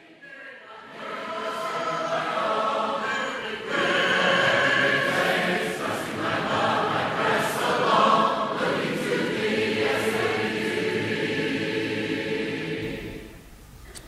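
Choir singing, fading in at the start and fading out near the end.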